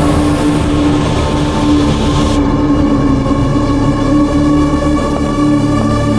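Tense drama score: low sustained drone notes held steady, with a hiss over the first two and a half seconds that cuts off sharply.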